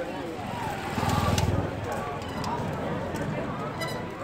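A motorcycle engine passing close by, loudest for about half a second around a second in, over the chatter of people nearby.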